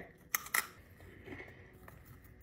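Two short, sharp clicks about half a second in, then faint room sound.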